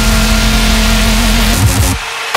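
Dubstep in a DJ mix: a heavy, distorted bass note held under a dense wash of noisy synth sound, with short rising sweeps near the end.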